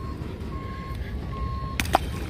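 A vehicle's reversing beeper sounding one steady high beep over and over, a little under two beeps a second, over a low background rumble. A short sharp knock comes near the end.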